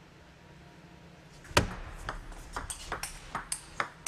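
Table tennis rally: the celluloid ball clicks sharply off rackets and the table. The first and loudest click comes about a second and a half in, followed by a quick run of clicks a few per second.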